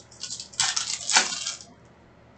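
Foil wrapper of a Panini Mosaic basketball card pack being torn open and the cards slid out: a run of crinkling, tearing crackles, loudest a little past a second in, stopping shortly before the end.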